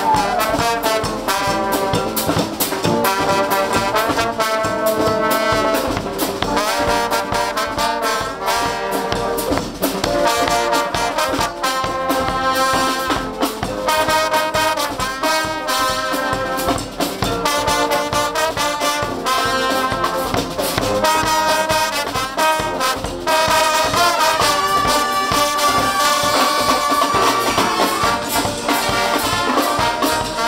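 Dweilorkest brass band playing a lively tune: trumpets, trombones and sousaphones over bass drum and snare drum. A long held note comes near the end.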